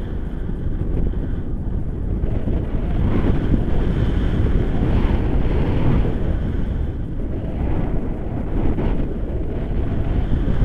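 Airflow of paraglider flight buffeting the camera's microphone: a steady low wind rumble that rises a little about three seconds in.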